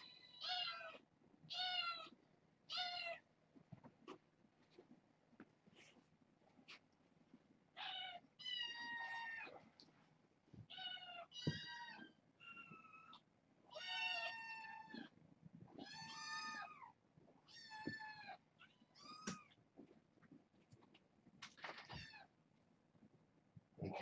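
Kittens meowing: about a dozen high-pitched meows, each dipping in pitch at the end, a few short ones at first and longer drawn-out ones from about eight seconds in.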